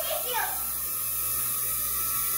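Small UFO-style toy drone flying, its tiny propellers giving a steady high-pitched whir.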